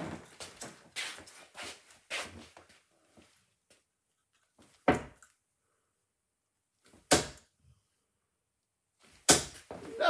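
Three 27 g tungsten darts striking a bristle dartboard one after another, about two seconds apart, each a short sharp thunk. The throws land as three single 20s. Faint knocks and rustles come in the first few seconds.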